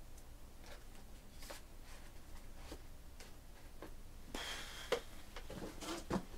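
Faint, scattered small clicks and taps, with a brief rustle about four and a half seconds in that ends in a sharper click: off-camera handling.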